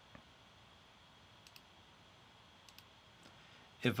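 Faint computer mouse clicks over quiet room tone: a single click, then two quick pairs of clicks.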